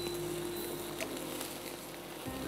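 Chicken pieces sizzling on a wire grill rack over an open gas flame, a steady hiss with a light click about a second in.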